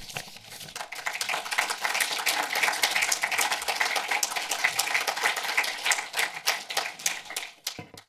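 Audience applauding: many hands clapping, swelling over the first second, holding steady, then thinning and cut off suddenly at the end.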